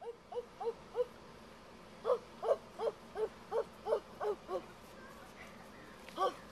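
A child's voice making a series of short vocal notes, each rising and falling, at about three a second: a few in the first second, then a longer run from about two seconds in.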